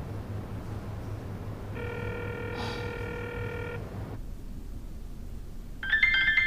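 A phone's ringing tone: one steady electronic tone held for about two seconds in the middle, over a low steady hum. Just before the end a phone's ringtone melody starts.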